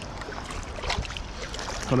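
Shallow sea water sloshing and splashing around a wader's legs and a long-handled sand scoop, with a couple of faint knocks about a second in.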